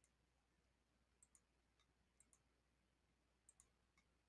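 Faint computer mouse clicks ticking checkboxes, three quick pairs about a second apart, over near silence.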